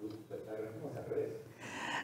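Faint, indistinct speech, getting a little louder toward the end.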